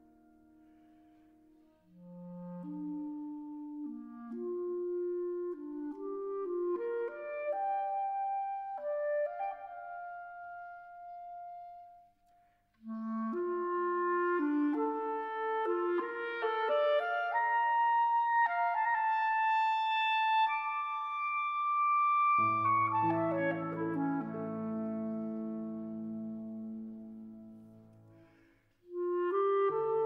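Clarinet and piano playing a classical piece. The clarinet melody climbs in two phrases, the second reaching a long high held note, and deep piano chords come in about two-thirds of the way through. The music fades near the end and a new phrase begins.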